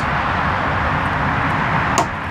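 Steady outdoor background rumble and hiss, with one sharp click near the end.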